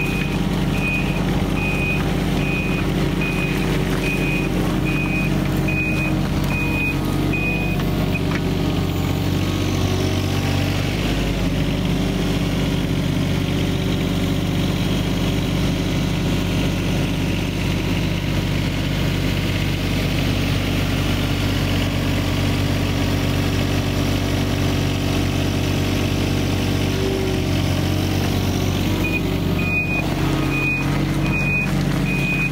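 Wacker Neuson ET24 mini excavator's diesel engine running steadily while the machine tracks, with its travel alarm beeping at an even rate for the first eight seconds or so and starting again just before the end.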